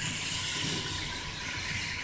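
Steady background hiss and low hum with a faint, steady high tone, with no distinct events: room tone between speech.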